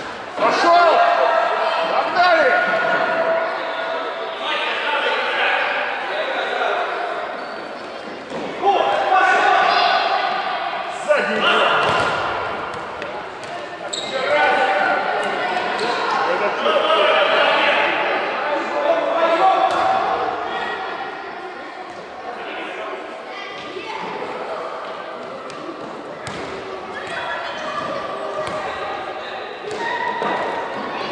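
Voices calling out across a large, echoing gym during an indoor children's football match. A futsal ball is kicked and bounces on the wooden floor, heard as scattered sharp knocks.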